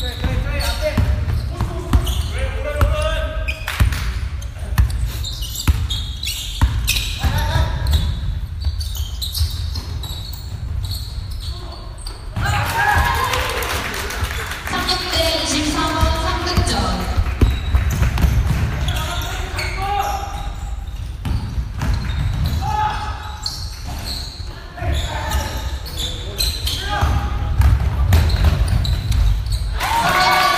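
Basketball game play: a basketball bouncing repeatedly on the court, with players' voices calling out at intervals.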